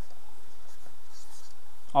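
Pen stylus scratching and tapping on a drawing-tablet surface while a word is handwritten, faint over a steady low hum.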